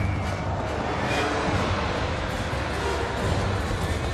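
Orchestral film score playing continuously at a steady, full level, with a few sustained notes held over a dense backing.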